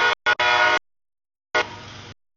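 CSX freight locomotive horn blowing for the grade crossing, loud, chopped into short pieces by abrupt audio dropouts, with one longer blast in the first second. About a second and a half in the horn sounds again, loud at first and then dropping to a lower level.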